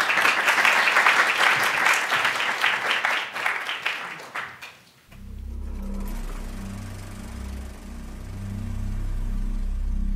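Audience applauding for about four and a half seconds, then fading out. About five seconds in, low music with deep held bass notes begins and runs on.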